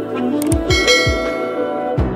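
Instrumental background music, with a couple of clicks and then a bright bell chime ringing out and fading about a second in, the sound effect of a subscribe-button animation.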